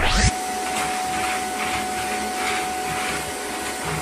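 Canister vacuum cleaner running steadily with a steady whine as its wand is worked over a tiled floor.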